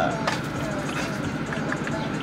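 Steady background hum inside a car cabin, with faint talking.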